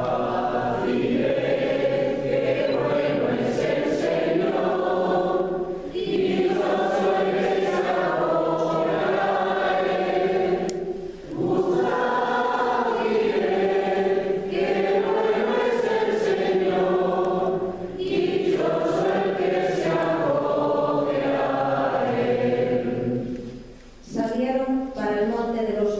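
A choir singing in long sustained phrases, broken by three brief pauses for breath.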